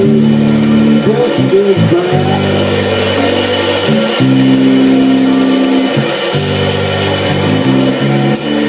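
Live blues band playing: electric guitar with held and bent notes over a walking bass line and drums with ringing cymbals.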